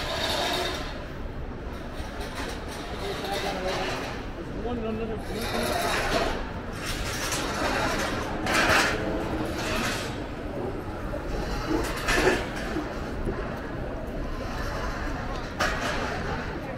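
Busy city street: indistinct voices of passing people over a steady background of traffic, with a few brief louder moments.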